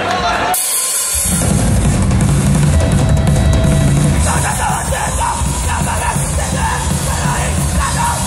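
Hardcore punk band playing live through a PA: a song kicks in about a second in, with electric guitars, bass and a drum kit playing loud and dense.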